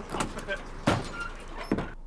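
An aluminium trailer's metal door clanking open: three sharp knocks a little under a second apart.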